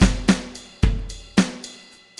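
GarageBand Smart Drums 'Live Rock Kit' playing a rock beat from the iPad: kick, snare and cymbal hits, about four strokes, thinning out near the end.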